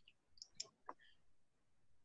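Near silence with three or four faint clicks in the first second.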